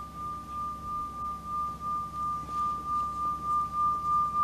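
A handheld metal singing bowl being sung by rubbing a stick around its rim. It gives one steady high ringing tone with a pulsing wobble about two to three times a second, growing gradually louder.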